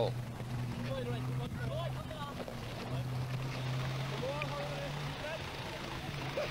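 Vintage grey Ferguson tractor engine idling with a steady low hum, faint voices in the background.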